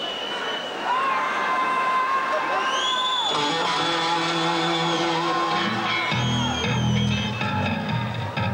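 Rock band playing live in a large arena, heard from among the crowd. Long held high tones glide into each note at first. About three seconds in, steadier guitar and keyboard notes come in, and low bass notes join around six seconds in, over crowd noise.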